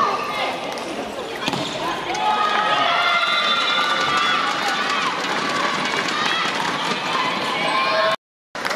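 Volleyball rally in a hall: sharp ball hits amid spectators' continuous chanting and shouting voices.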